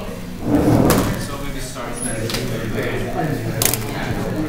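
Overlapping chatter of students talking among themselves in small groups, with a loud thump about half a second in and a sharp click near the end.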